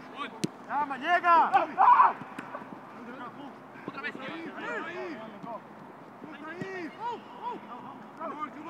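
Footballers' shouts and calls during a fast training game on grass, several voices overlapping. A single sharp thud of a ball being kicked about half a second in.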